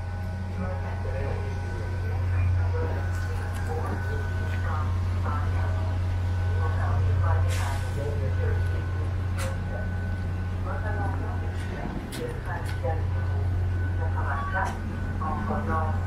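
Steady low hum of an idling diesel vehicle engine, dipping briefly about three-quarters of the way through, with indistinct voices and a few light clicks over it.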